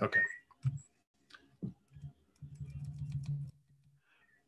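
Scattered light clicks, as of a computer mouse and keyboard being worked, with a short low hum about two and a half seconds in.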